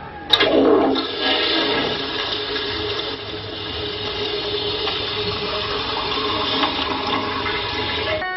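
Rushing, flushing water like a toilet flush, starting suddenly just after the start and then running on steadily.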